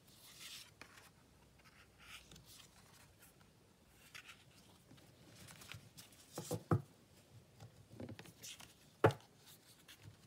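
Tarot cards being handled: soft sliding and rustling swishes as cards are moved and laid over a cloth, then a few light taps of cards set down from about six seconds in, the sharpest a little after nine seconds.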